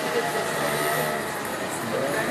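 A car driving slowly past close by on a city street, over the steady murmur of a crowd's voices.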